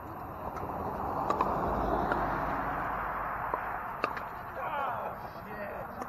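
Pickleball paddles popping against plastic balls, several sharp single hits scattered through, over a rush of noise that swells and fades over a few seconds. Voices come in near the end.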